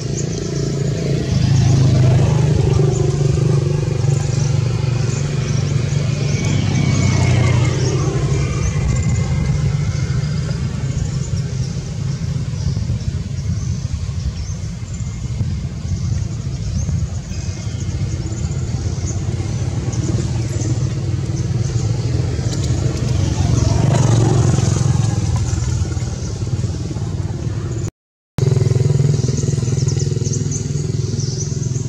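Steady low engine rumble of motor traffic, like motorbikes running nearby, swelling about two seconds in and again near the end; it cuts out for a moment shortly before the end.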